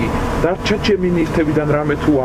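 Speech: a voice talking continuously, with no other sound standing out.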